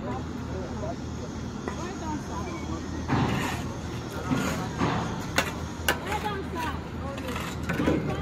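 Construction-site background: a steady low engine hum with indistinct voices, and two sharp knocks a little past the middle.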